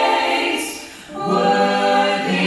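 Mixed a cappella vocal ensemble of women and men singing a held chord into microphones. The chord breaks off about half a second in with a brief hiss, and the voices come back in on a new chord just over a second in.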